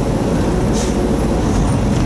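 Semi truck's engine and road noise heard inside the cab while driving: a steady low rumble, with a brief hiss about three-quarters of a second in.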